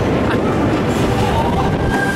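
Steady rumble of a Maurer Söhne spinning roller coaster car rolling along its steel track, heard from on board.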